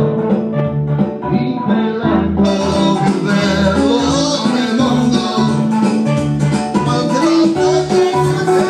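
Karaoke backing track playing through a loudspeaker, with amateur voices singing along into microphones; the music gets fuller and brighter about two and a half seconds in.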